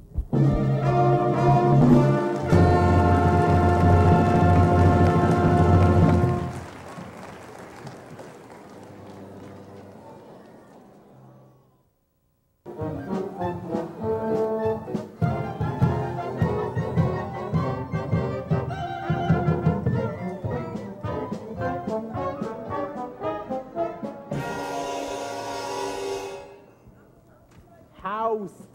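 Scene-change music for orchestra with brass: a loud held passage for about six seconds that dies away, a brief dropout, then a second passage with a steady rhythmic pulse that ends with a wash of noise near the end.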